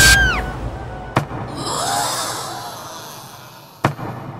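A pop song breaks off with its pitch sliding down, followed by a sharp click about a second in, a hissing swell, and another sharp hit near the end.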